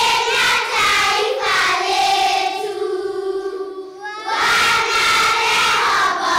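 A choir of young schoolchildren singing together in unison, holding one long note about halfway through before carrying on.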